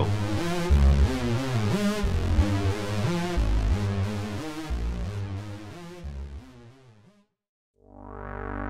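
Roland JUNO-60 software synthesizer playing its 'LD Classic Lead' preset: a lead line over deep notes, the tone wavering with LFO-driven pulse-width modulation synced to tempo. It fades out near the end.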